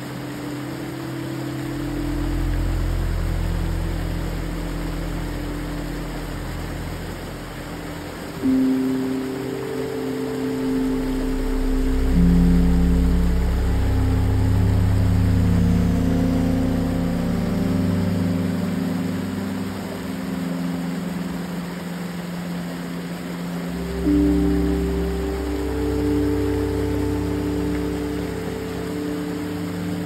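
Slow ambient music of low held chords that shift every few seconds, swelling louder twice, over the steady rush of water from a small creek cascade.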